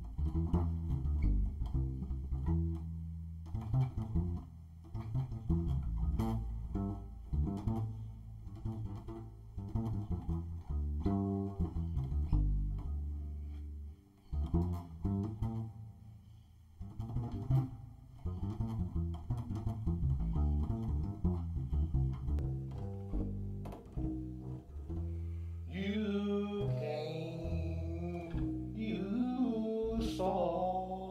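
Solo double bass plucked with the fingers, a continuous line of low notes with a few brief quieter moments. Near the end a man's voice joins with wordless singing over the bass.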